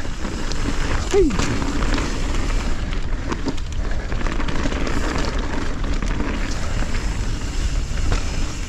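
Mountain bike riding down loose dirt and pine-needle singletrack: a steady deep rumble of wind on the camera microphone and tyres on the trail, with a few small knocks from the bike over bumps.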